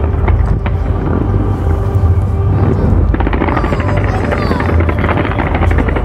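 Large fireworks display: a continuous heavy rumble of bursts with rapid crackling that grows denser about halfway through.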